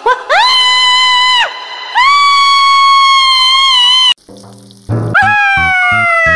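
High-pitched cartoon character voices giving three long drawn-out cries, the first rising into a held note and the last gliding down in pitch. A short hiss falls between the second and third, and a steady musical beat comes in under the last cry.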